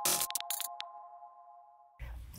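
Electronic intro theme music ending: a few sharp glitchy clicks in the first second over a held chord of steady tones that fades away.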